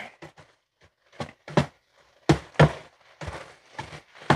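A black spatula scraping and knocking against a skillet as ground meat and vegetables are tossed and mixed: a series of short, separate strokes with quiet gaps between them.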